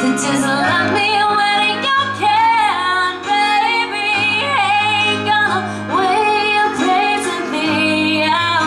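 Live female vocal sung into a microphone over instrumental band backing, with a wavering vibrato on long held notes.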